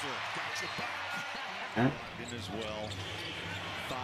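NBA game broadcast audio: steady arena crowd noise with a basketball being dribbled on the court.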